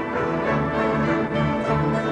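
Live rock band playing an instrumental passage, with sustained violin lines over electric guitar and bass.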